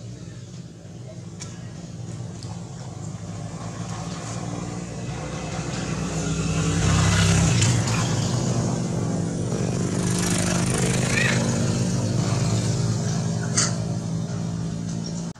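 A motor vehicle engine running close by, growing louder over the first seven seconds or so and then holding at a steady level. A short sharp click comes near the end.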